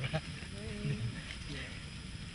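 A man's voice, words not caught: a phrase ends just after the start, then a drawn-out, wavering utterance comes about half a second in.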